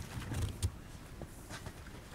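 Room tone picked up by the podium microphone, with low bumps and a few light clicks of handling at the podium, the sharpest about two-thirds of a second in.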